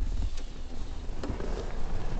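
Low rumble and hiss of a handheld camera being moved, with a couple of faint clicks.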